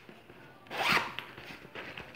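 Zipper on a fabric makeup bag being pulled: one short rasp about a second in, followed by a couple of light clicks.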